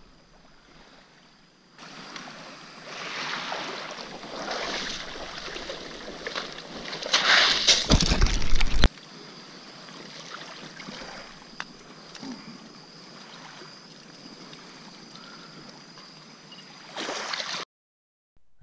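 Shallow surf water sloshing and splashing as a striped bass is drawn in over the shallows, growing louder to a peak a little past the middle. Then it cuts off abruptly to a quieter, steady hiss of wash with a faint high whine.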